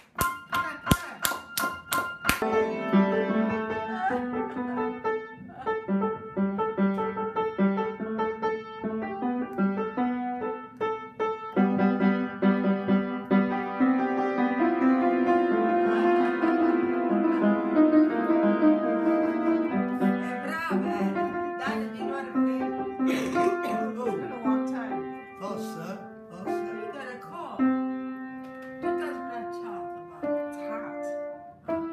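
Steady hand clapping for about the first two seconds, then an upright piano played by hand: a run of notes and held chords that carries on to the end.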